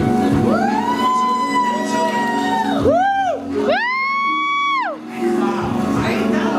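Three loud, high-pitched whoops of cheering over the end of the music: a long held one, a short one, then another long one, each rising in and falling away at the end.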